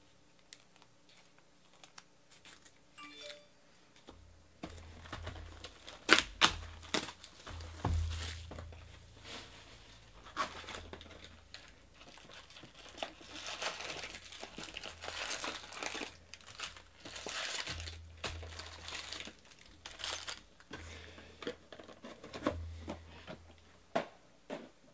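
Near quiet for about four seconds, then a cardboard Bowman Jumbo hobby box being torn open, with a few sharp tears and clicks. Its foil-wrapped card packs then crinkle and rustle as they are lifted out and stacked.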